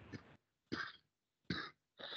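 A man's stifled laughter, muffled by a hand over his mouth: three short breathy bursts, about three-quarters of a second apart.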